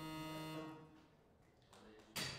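Weightlifting referee 'down' signal buzzer giving one steady tone for just under a second. It tells the lifter that the overhead lift is held and she may lower the bar.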